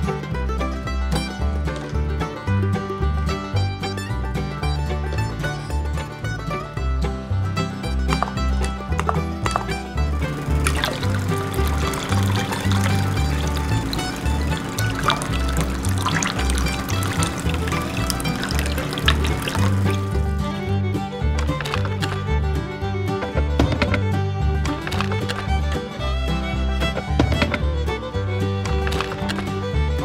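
Background music with a steady beat. From about ten seconds in to about twenty seconds in, liquid pours and trickles from the spouts of a toy juice dispenser into plastic cups under the music.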